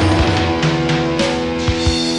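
Post-punk band playing from a late-1980s cassette recording: electric guitar and bass hold sustained notes under a few scattered drum hits, in the closing bars of the song.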